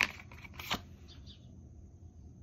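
Tarot cards being handled as one is drawn from the deck: two short clicks of card against card, one at the start and another about three-quarters of a second later.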